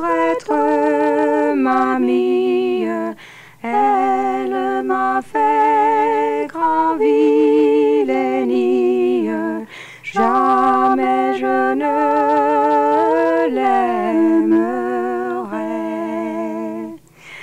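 Two women singing a 15th-century French song unaccompanied in medieval organum style: the same melody sung in parallel a fifth apart, which sounds odd to an ear used to harmony. The phrases are sung with a wavering vibrato and break for brief breaths twice.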